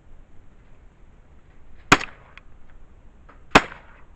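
Two shotgun shots at clay targets, about a second and a half apart, each a sharp crack with a short echo tail.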